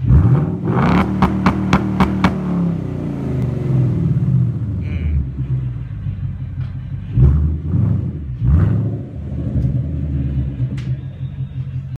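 Ford Mustang GT's 5.0-litre V8 idling through an MBRP cat-back exhaust, with throttle blips. It revs sharply at the start with a quick run of sharp cracks after it, then revs twice more, briefly, about seven and eight and a half seconds in, before settling back to idle.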